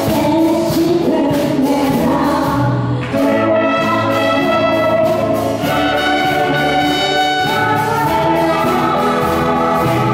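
A wind band of saxophones and trumpets playing a tune with a steady beat, with singing over it.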